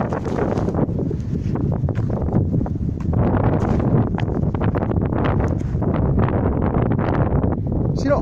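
Wind buffeting the microphone, loud and steady, with rustling from steps through dry grass.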